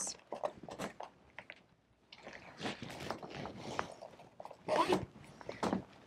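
Thin clear plastic of an inflatable arm air splint crinkling and rustling quietly, in scattered crackles, as an arm is slid into the sleeve.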